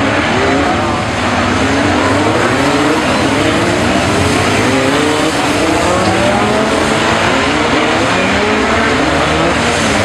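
A pack of BriSCA F2 stock cars racing together, many engines running at once. Their overlapping notes keep climbing and dropping as the drivers rev.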